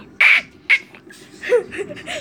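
A child imitating a duck's quack with the voice: three short, harsh bursts, the first the loudest.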